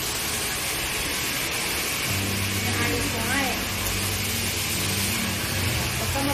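Steady background noise of traffic, with a low engine hum setting in about two seconds in.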